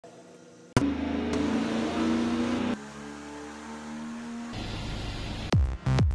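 Engine running under throttle on an engine dyno, heard in several short clips cut together with abrupt changes. Electronic music comes in about five and a half seconds in.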